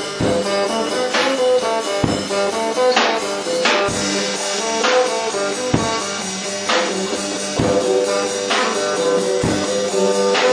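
A cigar box guitar and a drum kit playing an instrumental jam: held guitar notes over a steady beat, with a drum strike a little under once a second.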